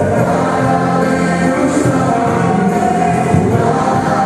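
A Christian worship song with several voices singing together over a band that includes guitar, loud and unbroken.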